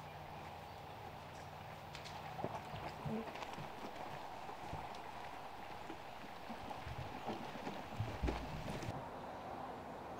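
Faint outdoor field ambience with a few scattered soft clicks and a low thump a little after eight seconds.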